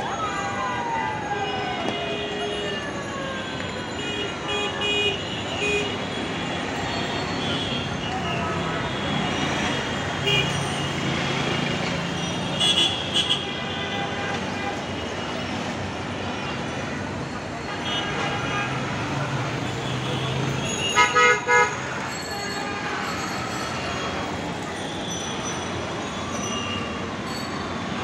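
Busy city road traffic with a steady engine and tyre din and frequent vehicle horn honks. The loudest are a short run of honks about halfway through and a louder cluster about three-quarters of the way in.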